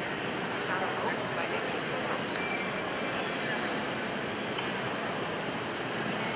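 Steady background noise of a large indoor arena, with an indistinct murmur of spectators' voices.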